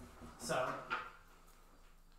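Mobile whiteboard being flipped over on its stand, with a short sharp knock about a second in.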